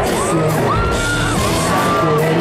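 Live pop-punk band playing through a stadium PA, with electric guitars and steady drum hits, heard from the crowd. A high voice slides up and holds over the music.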